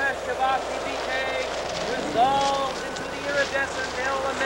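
Several people's voices calling out in short, high whoops and cries that rise and fall and overlap, over a steady hiss.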